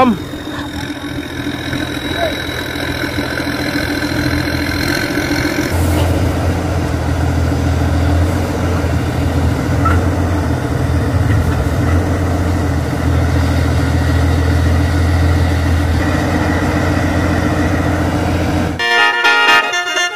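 Diesel engine of a 270 hp rice combine harvester running steadily. About six seconds in it gives way abruptly to a deeper, steady engine drone, and near the end a short outro jingle with horn-like notes starts.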